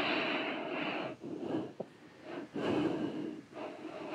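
Slow, deep human breathing while the palms are pressed hard together. There are two long breaths, one at the start and one about two and a half seconds in, each lasting about a second.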